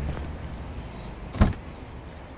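Low street and traffic rumble with a single sharp thump about one and a half seconds in, as an acoustic guitar is laid into its hard case. A faint steady high whine runs through the middle.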